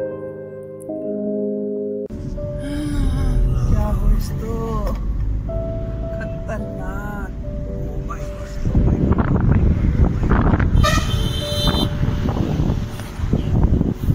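Solo piano music that cuts off about two seconds in, giving way to the sound of riding in a car: engine and road noise with long vehicle horn toots, and wind buffeting the microphone, much louder from about nine seconds in.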